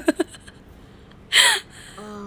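The tail end of a short laugh, then one sharp, breathy gasp about one and a half seconds in.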